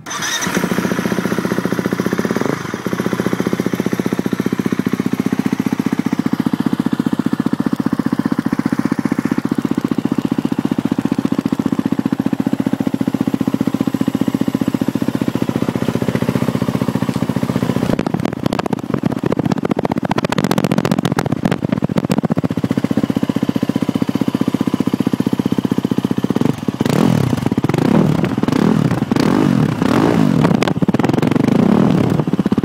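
KTM 350 SX-F four-stroke single-cylinder motocross engine firing up on its first start and settling into a steady idle. Near the end the engine pitch rises and falls a few times as the throttle is blipped.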